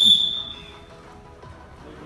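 A whistle blown in one long, steady blast that stops about a second in, the signal for the kicker to take his shot at the crossbar.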